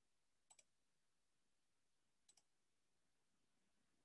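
Near silence, broken twice by a faint double click of a computer mouse: once about half a second in and again a little past two seconds.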